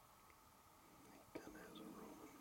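A short click about halfway through, then a person whispering quietly.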